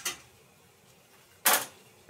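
A plastic spatula scraping a small metal pot of melting wax and shea butter in two brief strokes, a short one at the start and a louder one about one and a half seconds in.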